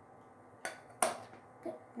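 Two sharp plastic clicks about half a second apart, the second louder, from a makeup compact being handled and snapped shut.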